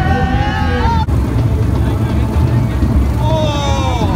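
Street carnival procession: a loud steady low rumble, with voices singing and calling out over it during the first second and again near the end.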